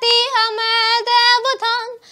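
A young girl singing a national anthem in Arabic, solo and unaccompanied, in held notes joined by short slides in pitch.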